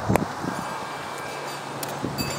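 Outdoor background noise: a steady hiss with a faint low hum and one soft knock just after the start.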